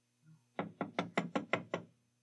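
Knuckles rapping on a door: a quick, even run of about eight knocks lasting just over a second, after a faint soft bump. It is someone outside knocking to be let in.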